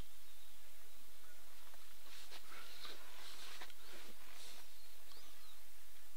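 Quiet outdoor ambience with some soft hissing and a few short bird chirps about two-thirds of the way through.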